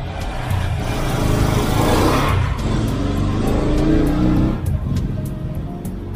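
Liquid being poured into a container while the washer fluid is mixed: a rushing sound that swells and fades away after about four and a half seconds, over background music.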